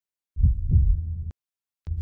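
A deep, low double thud, two beats about a third of a second apart, that cuts off abruptly a little after a second in.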